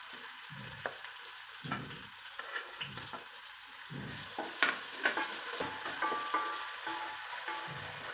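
Chopped onions sizzling in hot oil in an aluminium pot, with a steady hiss. A wooden spatula stirs and scrapes them against the pot in repeated strokes.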